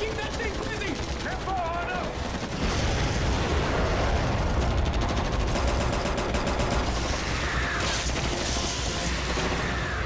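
Several assault rifles firing in rapid automatic bursts over a low rumble, with shouting voices. The gunfire grows louder about three seconds in.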